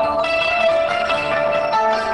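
Korg M3 workstation keyboard playing a combi patch: held chords of sustained pitched tones, with the notes changing just after the start and again near the end.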